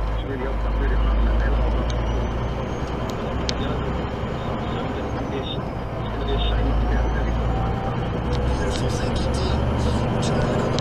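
Heavy goods vehicle's diesel engine and road noise as the lorry accelerates away from a roundabout. The low engine drone swells about a second in and again from about six seconds in as it gathers speed.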